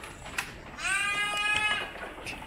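A goat kid bleating once: a single high call of about a second that rises at the start and then holds steady.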